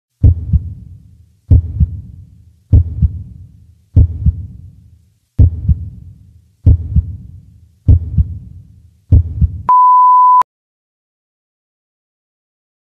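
Heartbeat sound effect: eight low double thumps, lub-dub, about one and a quarter seconds apart. Then a single steady high beep lasts under a second and cuts off sharply.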